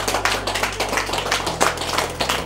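Hand clapping, quick and uneven, in a small room.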